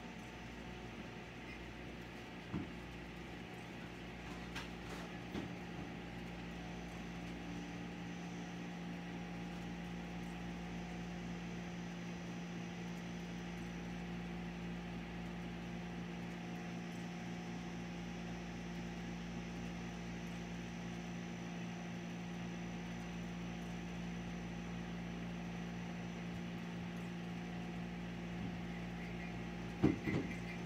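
Steady machine hum with a few held tones, building up over the first several seconds and then running evenly, with a few faint knocks in the first seconds.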